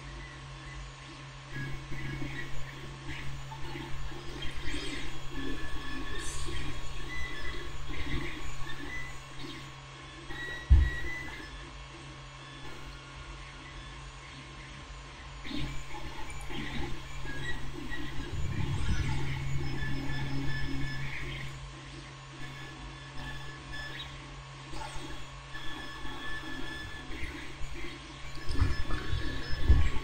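Close handling noise of a small paper model part being pressed and worked with metal tweezers: irregular faint rustling and scraping in two stretches, with one sharp knock about eleven seconds in, over a steady electrical hum.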